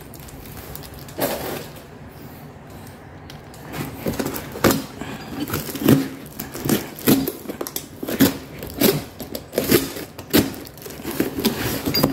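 Plastic courier bag and packing tape being torn and crinkled open by hand: a run of irregular rips and rustles that gets busier from about four seconds in.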